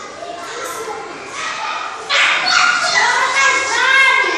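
Children's voices calling and shouting in a large, echoing room, growing louder about halfway through.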